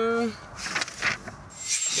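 Newspaper-like paper sheet rustling and crinkling as it is handled, irregular and scratchy, after a brief word right at the start.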